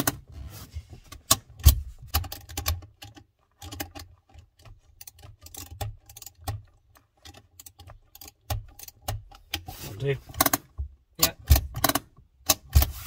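Metal clicking and ticking from a spanner working the handbrake cable adjuster at the lever's base, short sharp clicks, several a second in places, as the new cable is tightened.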